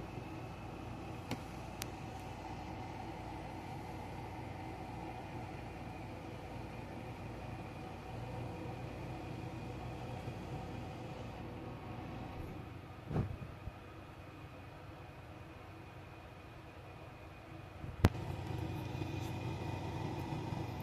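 Steady low mechanical hum, with a dull thump about 13 seconds in and a sharp click near the end.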